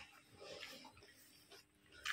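Near silence: room tone, with one faint, brief soft sound about half a second in.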